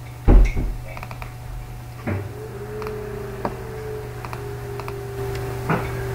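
A loud thump about a second in, then a few sharp computer mouse clicks as a file is selected and opened. About two seconds in, a steady tone starts and holds, over a constant low electrical hum.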